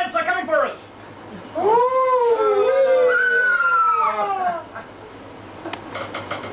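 A person howling into a microphone in imitation of an animal: one long wavering howl of about three seconds that rises, holds and slowly falls. A short vocal burst comes just before it.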